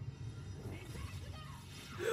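Faint Japanese dialogue from an anime soundtrack: a woman's voice speaking over a low, steady rumble.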